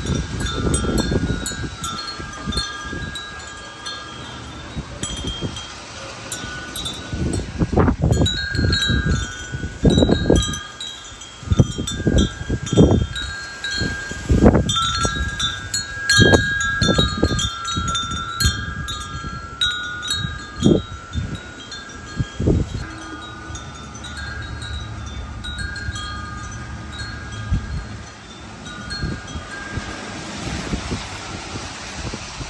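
Tubular wind chime ringing in gusty wind, its tubes sounding in repeated clusters of clear, sustained notes. Wind rumbles on the microphone in uneven gusts, strongest in the middle stretch.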